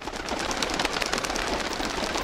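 A flock of pigeons flapping their wings: a dense, rapid flutter that starts abruptly.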